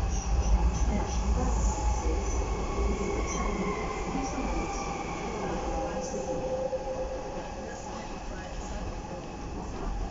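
Docklands Light Railway B07 Stock car heard from inside while running: a heavy rumble of wheels on track with thin whining and squealing tones above it. The noise gradually quietens as the train comes out of a tunnel into the open.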